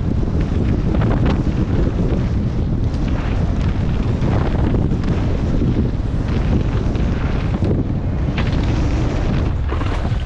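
Wind rushing over an action camera's microphone at speed on a downhill mountain bike run, with tyre roar on dirt and several sharp knocks and rattles from the Scott Gambler downhill bike over rough ground.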